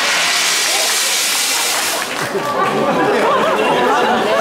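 A jet of spray hissing for about two seconds, then crowd voices.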